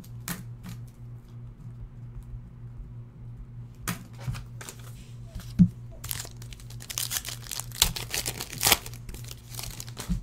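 A foil trading-card pack wrapper being torn open and crinkled by hand, with a few scattered clicks first and dense crackling tearing from about six to nine seconds in.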